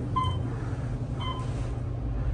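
Hotel elevator car riding up with a steady low hum, its floor-passing chime beeping twice, about a second apart, as it passes floors.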